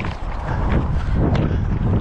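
Wind and rubbing noise on a body-worn camera's microphone: a continuous low rumble with scratchy handling sounds and a few light knocks as the wearer moves.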